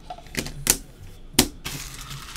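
Trading-card boxes handled by gloved hands: three sharp clicks or taps, then a soft rustle in the second half.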